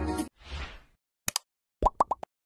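Background music stops abruptly, followed by a soft whoosh and then a few sharp clicks and a pitched pop: the sound effects of an animated like button being clicked.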